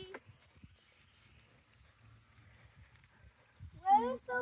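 Faint, irregular low thumps of footsteps while walking. A voice trails off at the very start and another begins near the end.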